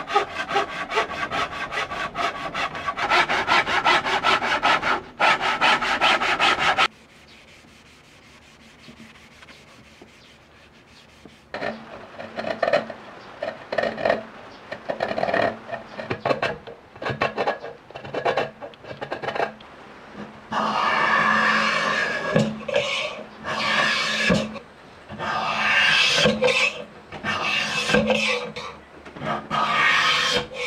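Hand saw cutting through a green bamboo culm in fast, even strokes. After a pause, a bamboo knife splitting the culm in short separate strokes, then a curved half-moon blade scraping the skin off the bamboo in longer rasping strokes.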